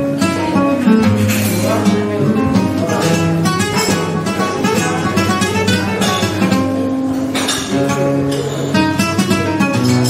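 Solo flamenco guitar playing a soleá: picked melodic runs and held bass notes, cut through by a few sharp strummed chords.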